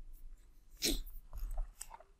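A short, quick breath through the nose close to the microphone, about a second in, with a couple of faint small clicks near the end.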